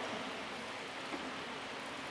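Steady low hiss of background room noise in a church during a pause in speech. The echo of a man's voice dies away at the very start.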